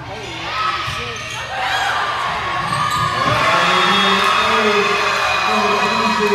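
Volleyball hits echoing in a gymnasium during a rally, then players and spectators shouting and cheering as the point is won, louder from about three seconds in.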